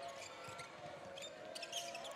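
Faint basketball game sound from the arena: a ball being dribbled on the court, with scattered short clicks and brief high squeaky tones over a low crowd background.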